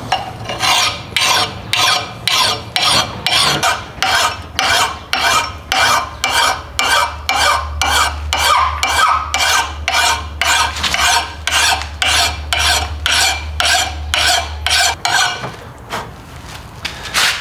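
A coarse mill file rasping across the steel edge of an old double-bitted axe in quick, even strokes, a bit more than two a second, grinding the chipped, pitted edge down below its dings. The strokes stop shortly before the end.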